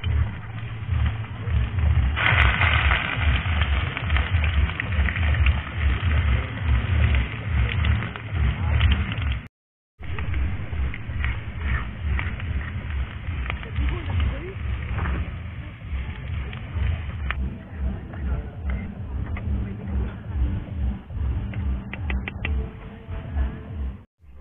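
Gusty wind rumbling on the microphone, with chopped onions sizzling in oil in a pan on a portable gas stove. The sizzle starts suddenly about two seconds in, and the sound cuts out for a moment nearly halfway through.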